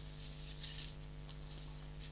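Low, steady electrical hum with a faint hiss and a couple of very faint ticks: background noise of the broadcast sound feed.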